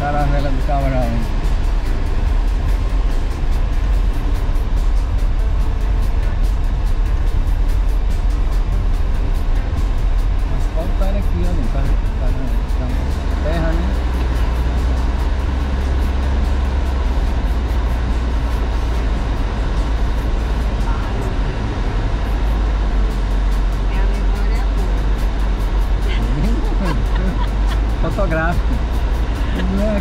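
Car driving along a paved road, heard from inside the cabin: a steady low rumble of engine and tyres.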